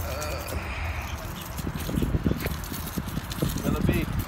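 Low rumble of wind on a handheld phone microphone, with irregular taps and scuffs and a faint voice.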